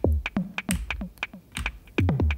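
Teenage Engineering EP-133 K.O. II sampler playing pieces of a longer recorded sample as chops are tapped in on its pads: a quick, uneven run of about a dozen short, sharp hits that each die away fast, with the clicking of the pads.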